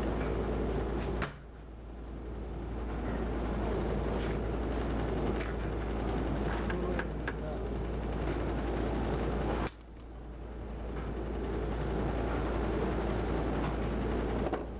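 Wire nail making machine running, a continuous mechanical clatter with light clicks over a steady low hum. The sound drops off abruptly twice, about a second in and near ten seconds, and each time builds back up over a few seconds.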